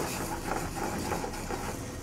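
A spoon stirring warm lemon butter with shallots and herbs in a pan, with faint irregular scraping, after a single tap right at the start, over a steady low hum.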